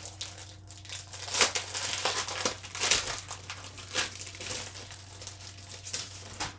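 Clear plastic wrapping on a pack of file folders crinkling and tearing as it is pulled open by hand, in irregular bursts, loudest about a second and a half in.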